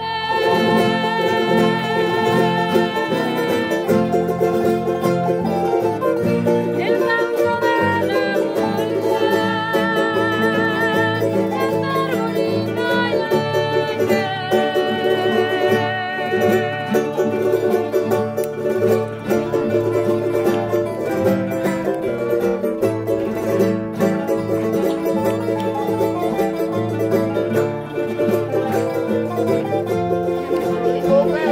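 Canarian string ensemble playing a folía: several nylon-string classical guitars strumming chords, with a bright plucked melody from a laúd and a small timple on top. The playing is continuous and unbroken.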